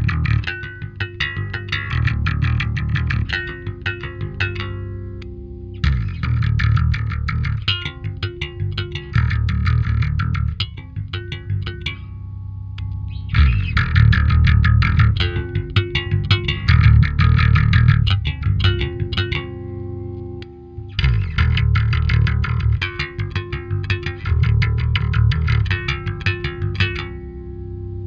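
Dingwall NG2 five-string electric bass played fingerstyle through its active Darkglass preamp, with the tone controls at halfway. It plays a line of notes in phrases broken by short pauses, with a held note fading out about halfway through.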